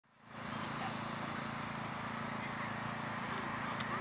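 Steady outdoor background of low hum and hiss with faint distant voices, and a couple of soft clicks near the end.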